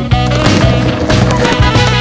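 Upbeat swing jazz with brass plays throughout, over which a skateboard rolls across a wooden mini ramp. A sharp knock comes just after the start, as the board comes off the coping.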